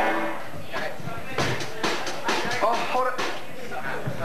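Live rock band playing through amplifiers: electric guitars and a drum kit, with several sharp drum strikes standing out.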